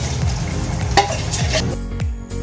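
Hot cooking oil sizzling in a wok on a gas burner, heated and ready for sautéing, with a single light click about a second in. Music comes in near the end.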